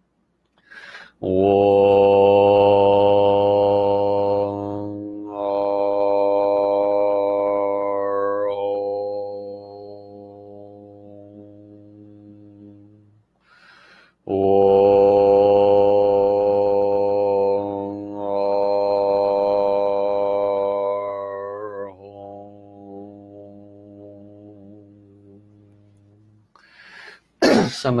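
A voice chanting two long, sustained tones of about twelve seconds each. Each tone holds one steady pitch, then near its end the vowel closes and fades into a quieter hum.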